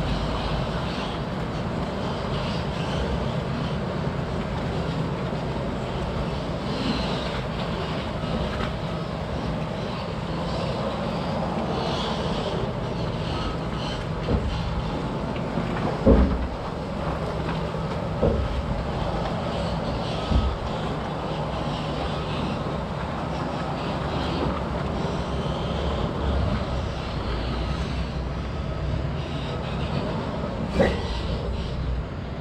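Log truck's diesel engine running as the rig rolls slowly along a rutted dirt woods road, with the empty log trailer rattling behind it. Several sharp clanks from the trailer over bumps come around the middle, the loudest a little past halfway.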